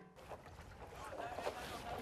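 Faint outdoor ambience of a shallow river: running water with wind rumbling on the microphone, slowly growing louder.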